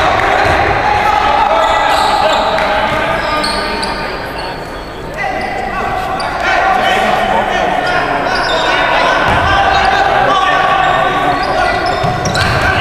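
Basketball being played in a gym that echoes: a ball bouncing on the hardwood court under indistinct, overlapping voices of players and onlookers.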